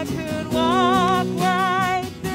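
Live worship band playing: electric and bass guitars, keyboard and drum kit under a melody line of long notes that waver with vibrato, with a short break between the two notes.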